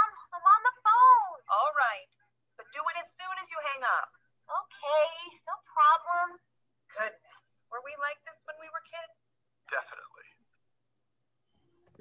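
Speech only: several voices running through a recorded English-lesson dialogue, sounding thin and narrow as over a call line, stopping about ten seconds in.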